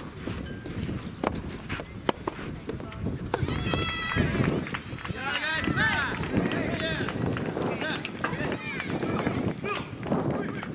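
Sharp knocks of rackets hitting a soft-tennis rubber ball during the first few seconds. Then several voices shouting and cheering from about three and a half seconds in until near the eight-second mark.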